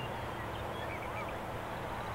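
Steady outdoor background noise with a low hum, and a few faint, short bird calls between about half a second and a second and a half in.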